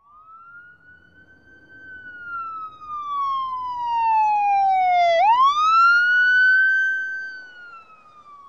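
A siren wailing: its pitch climbs, sinks slowly for several seconds, then sweeps quickly back up and holds before sinking again. It grows louder toward the middle and fades away near the end.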